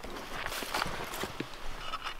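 A few faint clicks and knocks with light scuffing as the rusted front hood of an old Volkswagen Beetle is opened.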